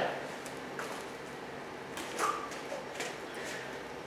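Quiet room with a low steady hum, scattered faint clicks and rustles of a person shifting weight side to side, and one soft short sound about two seconds in.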